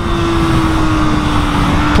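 Kawasaki ZX-6R's inline-four engine heard from the rider's seat on track, holding a steady note that sinks slightly in pitch through a corner, over low wind rumble.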